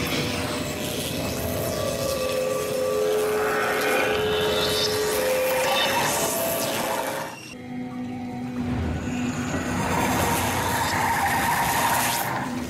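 Television soundtrack: dramatic music under a loud rushing sound effect for a magic power taking hold of cave rock. The rush dips briefly about seven and a half seconds in, then builds again.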